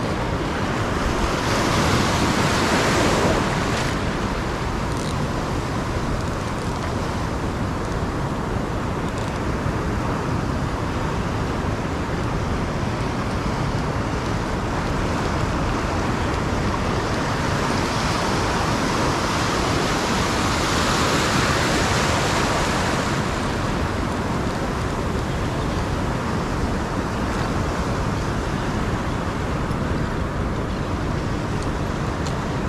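Ocean surf breaking and washing around the wader's legs in shallow water, a steady rush that swells twice: about two seconds in, and again around twenty seconds in.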